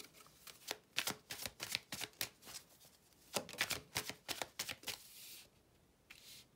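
Tarot cards being shuffled by hand: a quick irregular run of sharp card clicks and slaps, with a brief soft swish near the end as a card is drawn out and laid on the table.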